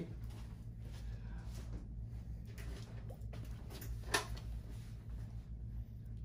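Room tone with a steady low hum, faint handling or movement noise, and one short knock about four seconds in.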